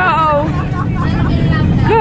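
Airliner cabin noise during the take-off roll: a loud, steady low rumble of the engines and the runway, heard from a window seat inside the cabin. A woman's voice sounds briefly near the start.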